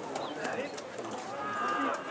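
Voices of players and spectators calling out across a football ground, unclear and at a distance, with one drawn-out call shortly before the end.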